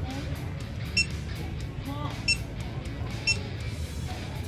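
Short high beeps from a backup-camera monitor as its buttons are pressed, three in all, spaced about a second apart, over background music.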